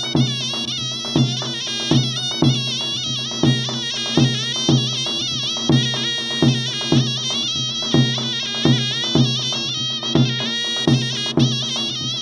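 Traditional Turkish folk music: a reed wind instrument plays a wavering, ornamented melody over a drum striking roughly every half to three-quarters of a second.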